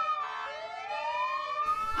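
Fire engine siren wailing: the pitch dips, then climbs slowly for about a second and a half.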